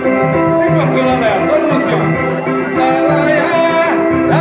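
Live samba band playing, with plucked-string accompaniment and a repeating low note setting the beat, and a man's voice singing into a microphone over it.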